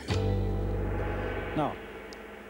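A gong struck once, its ringing tone holding steady for about a second and a half, then dying away.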